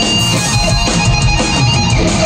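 Hard rock band playing live at full volume: electric guitars over bass and drums, with gliding, bending pitched lines running through the mix.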